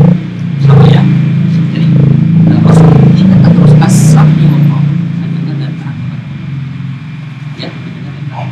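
A man's voice talking, loud and close to the microphone, louder in the first few seconds.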